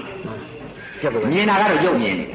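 Speech: after a short pause, a man's voice picks up again about a second in, its pitch wavering and quavering.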